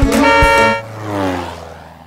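A cartoon car horn is held loud for under a second, then its pitch slides downward as it fades away, like a car passing by.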